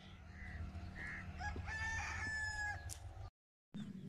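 A rooster crowing once: a call of about a second and a half that rises and then holds, over a steady low rumble. Two short high notes come just before it, and the sound drops out briefly near the end.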